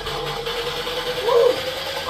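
A brief voice sound a little over a second in, rising and falling in pitch, over a steady hum.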